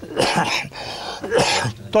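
An elderly man coughing into his hand: two short coughs, about a second apart.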